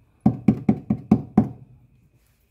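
Knuckles rapping six times in quick succession on the wooden panel of an egg incubator, each knock sharp and a little hollow.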